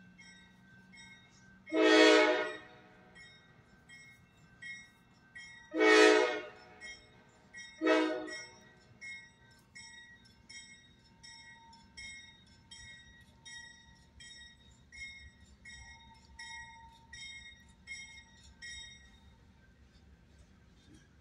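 Nathan K5LA five-chime air horn on a CSX freight locomotive sounding two long blasts and one short one, about two, six and eight seconds in. Under it a grade-crossing bell dings steadily until near the end, over the low rumble of the passing train.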